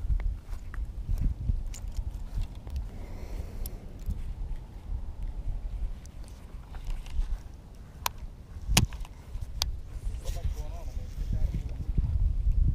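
Low rumble of outdoor wind and handling on the microphone while a baitcasting rod and reel are cast and worked, with a few sharp clicks about eight to ten seconds in.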